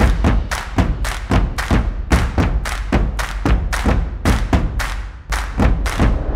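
Intro music for an animated title sequence: a fast, driving rhythm of heavy percussive hits, about three to four a second, over deep bass.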